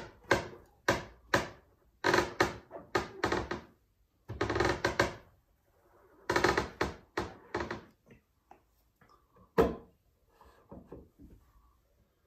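Rubber squeegee dragged across a screen-printing mesh with plastisol ink: a run of scraping strokes, some short and some longer, over the first eight seconds. A single sharp knock follows about two-thirds of the way through, then a few faint ticks.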